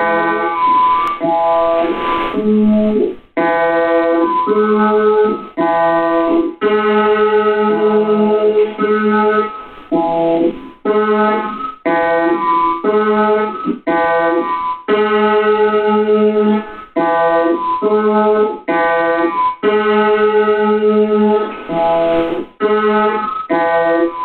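Experimental electronic music: held keyboard chords, steady in pitch, cut off abruptly and restarted every second or two in a chopped, stuttering pattern.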